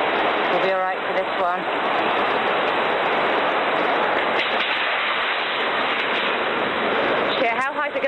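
Tsunami floodwater rushing and churning inland over low ground: a loud, steady rush of water.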